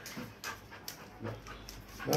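A dog panting, short breathy puffs repeating about two to three times a second.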